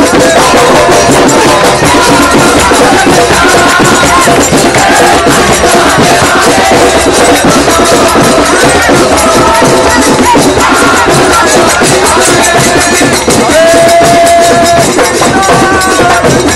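Kirtan: a group of voices singing a devotional chant together over a fast, steady beat of drums and hand cymbals.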